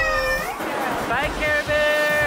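A young girl crying, wailing cries that slide up and down in pitch and end on a longer held cry.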